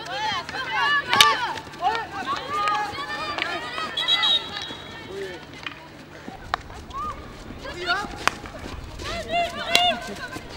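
Players on a field hockey pitch shouting and calling to each other in short, high calls, with a few sharp cracks of hockey sticks striking the ball, the loudest about a second in.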